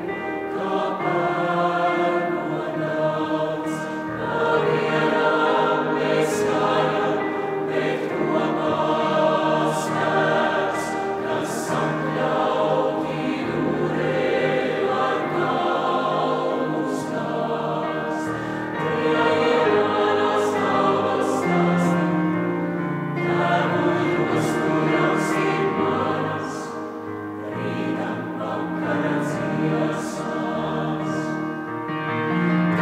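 Mixed choir of women's and men's voices singing together in sustained chords, with crisp sung consonants, in a church.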